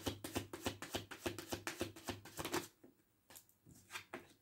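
Tarot deck being shuffled by hand: a quick, even run of card slaps, about seven a second, that stops about two-thirds of the way in, followed by a few faint taps of cards.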